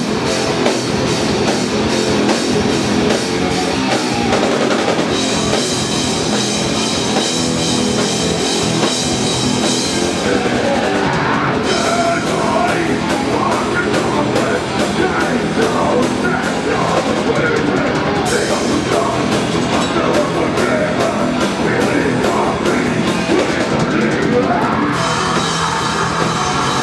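Heavy metal band playing live: distorted electric guitars, bass and a drum kit, loud and unbroken, with a singer on the microphone.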